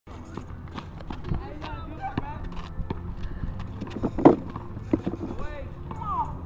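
Basketball players shouting and calling out to each other during a game, with quick footfalls and sneaker scuffs on the court and a louder thump about four seconds in.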